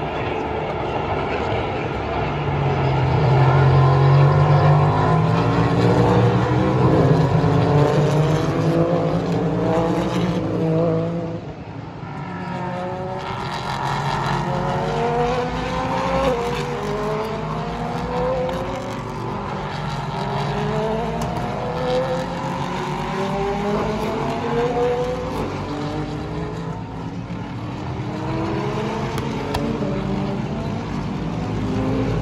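Several endurance race cars at full throttle on the circuit, one after another. Their engines climb in pitch through repeated gear changes, loudest in the first third, with a brief lull partway through before more cars come through.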